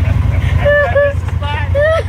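Honda Pioneer 1000 side-by-side's parallel-twin engine idling, a steady low rumble, with voices and laughter over it.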